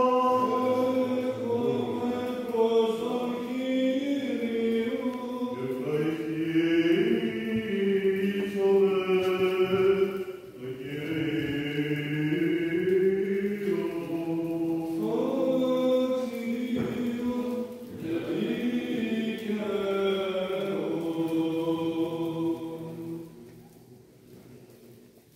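Byzantine chant of a Greek Orthodox liturgy: voices hold long notes that glide slowly from pitch to pitch. The chant breaks briefly twice and stops shortly before the end.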